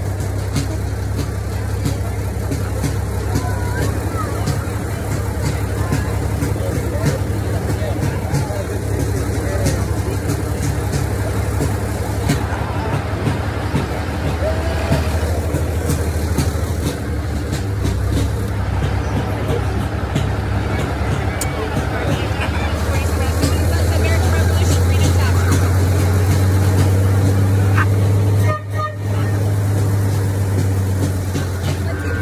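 Low, steady engine drone of the slow-moving vehicle carrying the camera, growing louder about three quarters of the way through and dropping out briefly near the end, with voices of people along the street.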